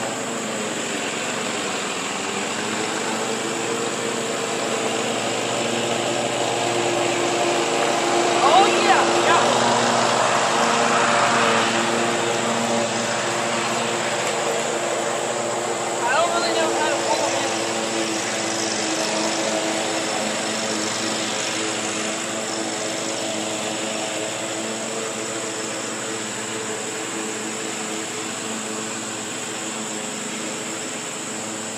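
Lawn mower engine running steadily, its hum drifting slightly in pitch. Two brief louder bursts stand out, about nine and sixteen seconds in.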